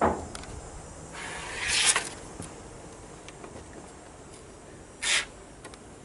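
A sharp knock, then two short bursts of hiss: the first swells for under a second and stops about two seconds in, the second is brief, near the end.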